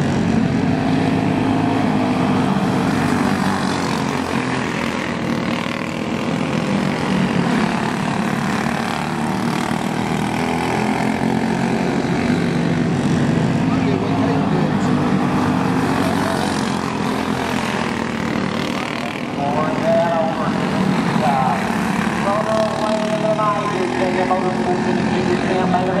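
Several champ kart engines racing together at speed, a steady buzzing drone that wavers up and down in pitch as the karts go through the turns and pass.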